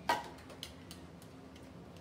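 One sharp click of a small hard object being handled, followed by three faint ticks about a third of a second apart.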